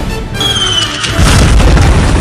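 Festive intro music with firework sound effects: a thin falling whistle about half a second in, then a loud, deep firework boom just after a second in that rumbles on.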